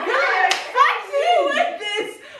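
Several girls laughing and exclaiming together, with one sharp hand clap about half a second in.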